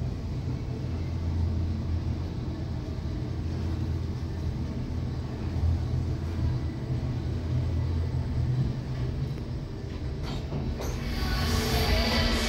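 Schindler 3300 machine-room-less traction elevator car travelling upward, heard from inside the cab as a steady low rumble. Near the end the car stops with a few clicks as the doors open, and music from the room outside comes in.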